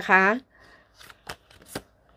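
Tarot cards being handled in the hand: a few short, sharp card snaps as cards are thumbed and flicked off a thick deck, in the second half.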